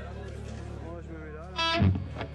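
Steady amplifier hum and audience chatter between songs, then a single short, loud electric guitar note near the end.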